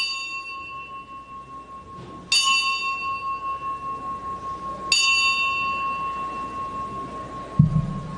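An altar bell struck three times, about two and a half seconds apart. Each strike rings on with a steady, slowly fading tone, marking the elevation of the consecrated chalice at Mass. A short low thump comes near the end.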